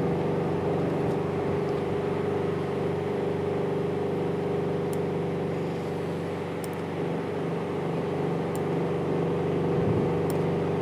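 A steady mechanical hum with a low, even pitch, and a few faint clicks.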